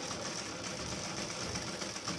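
Black straight-stitch sewing machine running steadily, stitching a second row of stitches along the seam of a cotton nighty to double-stitch it.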